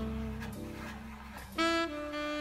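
Slow modal jazz recording: a long held note over a low double-bass line fades away, and a saxophone enters with a new, bright held note about one and a half seconds in.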